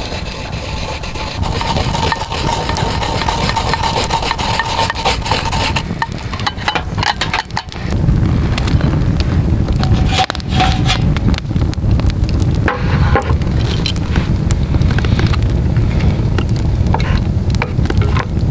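Fresh wasabi root being rubbed on a metal grater in a stainless bowl, a scratchy rasping. About eight seconds in, the louder, low rumble of a campfire burning takes over, with occasional crackles.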